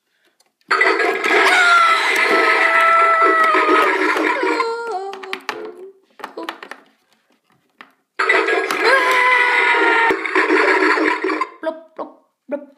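Battery-powered toy bathroom playset playing its electronic sound effect twice through its small speaker, each a hissing, water-like sound with a thin tone that slowly falls in pitch, lasting about four to five seconds.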